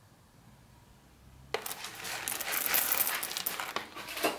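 Whole coffee beans poured from a foil bag into the bean hopper of an automatic coffee machine: a dense rattle of beans hitting the hopper that starts about a second and a half in.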